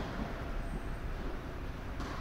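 Steady low rumble of background noise in a large indoor tennis hall between shots, with no racket strike heard.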